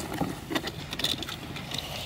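Cardboard box flaps and paper rustling with a few small scrapes as a child's hands rummage inside an opened shipping box, over a steady low rumble.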